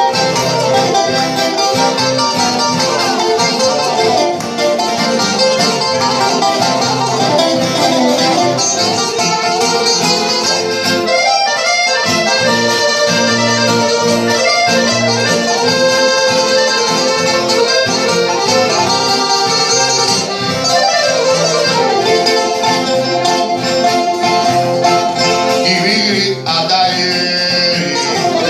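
Greek laïko ensemble playing an instrumental passage: bouzouki with guitar and accordion, no singing.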